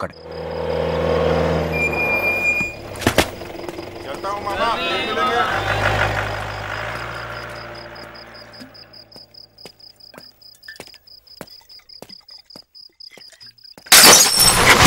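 Film sound design for a night street: a low hum and a sharp hit in the first few seconds, then a voice calling out briefly. After that, crickets chirp steadily and evenly, with scattered light footsteps on a wet stone lane growing sparse toward the end.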